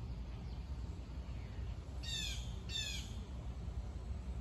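A bird calling twice, two short calls less than a second apart near the middle, over a steady low background hum.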